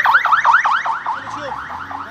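Ambulance siren in a fast yelp, its pitch sweeping rapidly up and down several times a second. It is loudest at first and fades over the second half as the ambulance passes.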